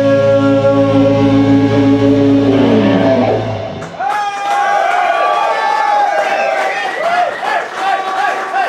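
A live metal band's final chord rings out on distorted electric guitars and bass and is stopped about four seconds in. The audience then cheers and shouts.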